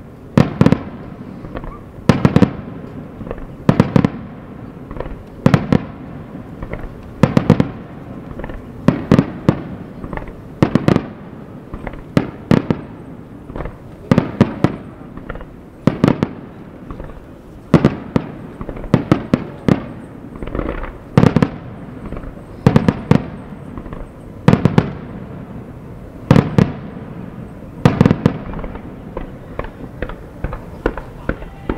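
Aerial firework shells bursting in a continuous barrage, with loud bangs in clusters of two or three about every one and a half to two seconds, each trailing off in a rumbling echo.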